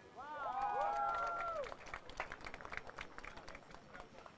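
A small crowd cheering, several voices whooping with rising-and-falling pitch for about the first second and a half, then scattered clapping.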